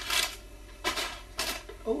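Packing material inside a cardboard box rustling and crinkling as it is handled and pulled out, in three short bursts.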